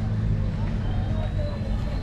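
Steady low hum of a vehicle engine idling nearby, with a low rumble underneath and faint voices on top.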